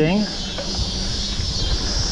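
Mountain bike rolling down a dirt singletrack: a low rumble of tyres and wind on the camera under a steady high-pitched buzz.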